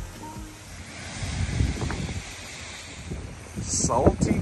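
A waterfall pouring steadily into a rocky pool, with low gusts of wind buffeting the microphone. A voice cuts in near the end.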